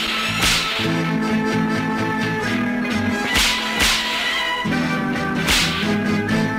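Film-song instrumental music punctuated by four sharp whip cracks: one about half a second in, two in quick succession a little past the middle, and one near the end.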